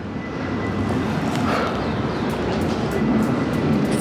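Steady rumble of city traffic noise that swells slightly after the first second.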